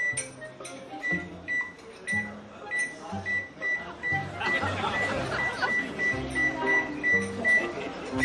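Microwave oven keypad beeping as its buttons are pressed: a steady string of short, high, single-pitch beeps, about two to three a second. Background music with a steady bass line plays underneath.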